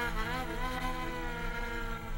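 Kamancha, the Azerbaijani bowed spike fiddle, being played solo. The pitch slides and wavers near the start, then settles into one long held bowed note.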